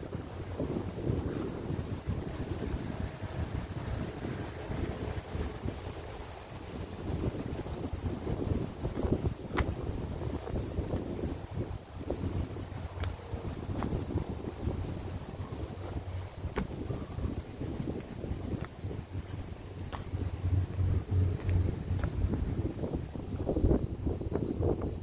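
Strong sea wind buffeting the microphone: a gusty low rumble that rises and falls, with a faint steady high tone above it.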